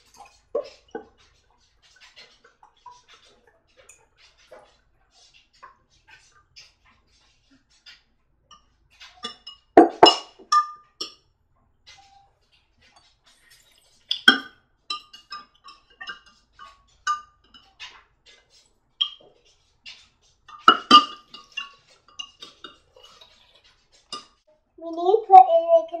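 A metal spoon stirring jello mix in a glass jug, with light scrapes and taps throughout and three louder clinks that ring on briefly.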